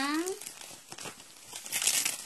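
Plastic packaging crinkling as it is handled, with a louder rustle near the end.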